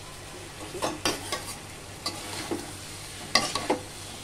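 Stirring and scraping through cooked potato and cauliflower pieces in a metal kadai: several short clicks and scrapes over a faint, steady sizzle.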